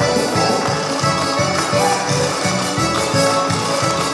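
Lively Russian folk dance music with a fast, steady beat, accompanying a Cossack dance performance.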